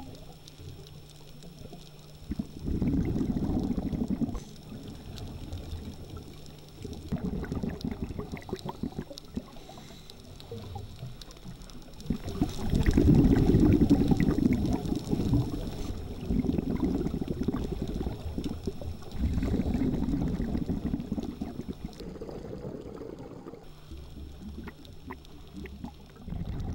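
Scuba regulator exhaust heard underwater: bursts of bubbles gurgling from a diver's exhalations, coming every few seconds with quieter gaps between breaths.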